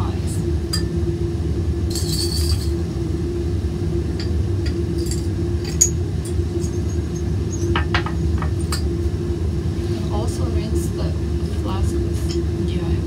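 Glassware clinking: several light, sharp clinks as a flask is tipped and poured into a beaker of ice, over a steady low hum from the fume hood.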